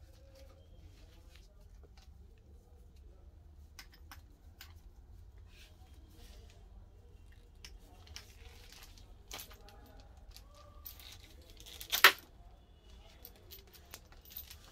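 Hands handling a green rubber oxygen hose and the white wrapping over its metal fitting: soft rustling and crinkling with scattered small clicks, and one sharp loud snap about twelve seconds in.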